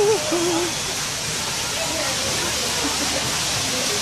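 Steady rush of falling water from a pool's water feature, an even hiss with no breaks.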